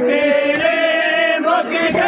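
Male voices chanting a noha (Muharram mourning lament) in Punjabi, a long drawn-out line held for about a second and a half before breaking and starting again.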